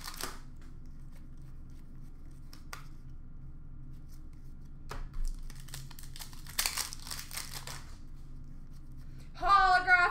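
A trading-card pack being torn open by hand: a long ripping, crinkling rustle of the wrapper about two-thirds of the way in, with a few small clicks of handling before it.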